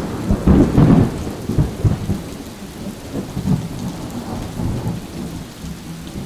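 Thunderstorm: rolling thunder over steady rain, loudest in the first second, then easing off and dying away near the end.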